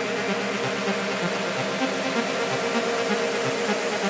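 Techno track playing through a DJ mix with the bass cut away, leaving a steady, dense synth texture with nothing in the low end.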